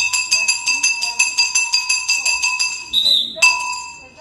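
Rapid bell-like ringing, about six strikes a second on a cluster of high tones, breaking off briefly about three seconds in and then resuming.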